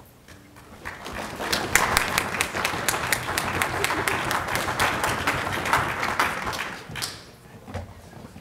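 Audience applauding: the clapping builds about a second in, holds for several seconds and dies away near the end.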